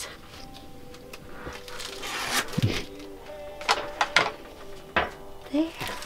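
A few sharp snaps as a piece of cookies-and-cream chocolate bark is broken by hand, over quiet background music.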